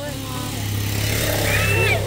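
A motorcycle approaching and riding past, its engine growing steadily louder and loudest near the end.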